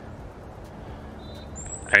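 Steady faint outdoor background noise with a thin, high bird whistle coming in about a second in and a higher one near the end.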